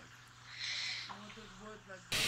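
Quiet, low-pitched male speech in Japanese, with a short breathy hiss about half a second in.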